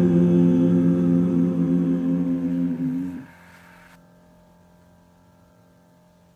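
Closing chord of a praise song: singers and keyboard hold one chord for about three seconds, then cut off. A faint held keyboard tone lingers and fades out near the end.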